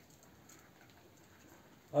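Near silence: quiet room tone, with a man's voice starting to speak at the very end.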